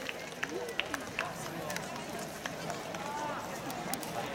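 Athletics stadium ambience: faint distant voices over a steady background hum, with a few short sharp clicks.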